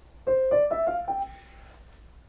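Steinway piano: five single notes played one after another, stepping upward, fingered one-two-three-four-five, the last note left to ring and fade.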